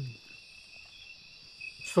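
Steady high-pitched chorus of night insects chirping, several layered tones holding without a break.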